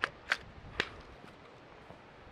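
Three sharp plastic clicks from a small plastic fuse holder being handled, its parts knocking and clicking together: one right at the start, then two more about a third of a second and just under a second in.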